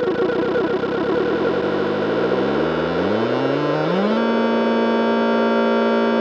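Electronic groovebox synth music: a dense pulsing pattern whose low notes climb in steps over a couple of seconds, then settle into a steady held chord about four seconds in.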